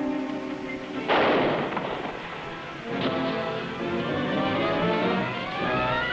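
A revolver shot about a second in, loud and sudden, then a second, lighter crack about three seconds in, over background music that rises in pitch near the end.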